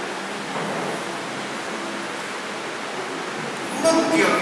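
Steady hiss of background noise between spoken phrases, with no distinct sound event.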